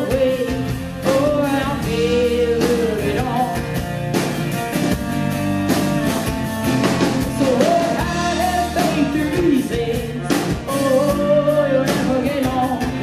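Live folk-rock band playing: a bowed viola melody over acoustic guitar, electric bass and a drum kit.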